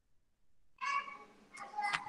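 A short, high-pitched vocal cry coming through a video call, about a second in and again near the end, after a moment of dead silence on the line.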